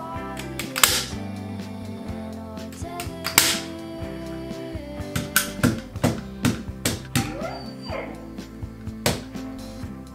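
Hand staple gun firing staples through upholstery fabric into an armchair's frame: sharp snaps, the two loudest about a second and three and a half seconds in, then a run of lighter clicks later on.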